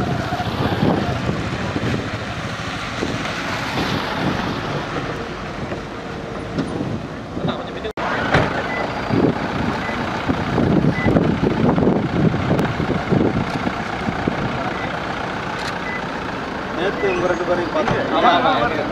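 SUV and car engines running in a slowly moving motorcade, with people talking nearby. A faint high beep repeats through the second half.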